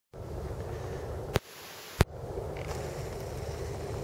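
Steady low outdoor rumble with two sharp clicks, the first about a third of the way in and the second about half a second later, with a duller, quieter stretch between them.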